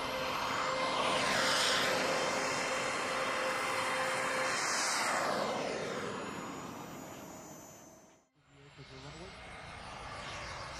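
Turbine-powered radio-control scale model F-100 Super Sabre jet making low, fast passes: a rushing turbine roar with a high whine that swells twice as the jet goes by and drops in pitch as it pulls away. The sound fades out about eight seconds in, and a fainter jet follows after a brief gap.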